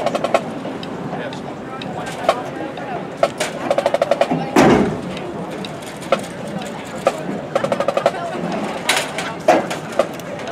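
Marching drumline tapping out a cadence of sharp stick and rim clicks, with two quick runs of taps about a second long each. A louder burst of noise comes about halfway through.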